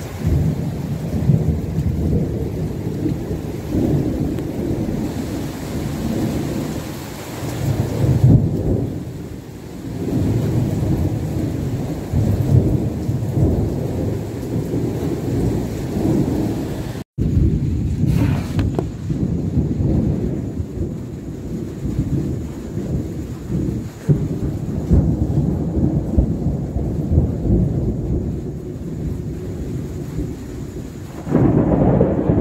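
Thunderstorm: deep thunder rumbling and rolling almost without pause, swelling and fading every few seconds, over a hiss of rain. It cuts out for an instant just past the middle.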